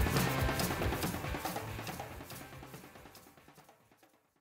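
A rock band recording with drum kit fading out at the end of a track, dying away steadily to silence.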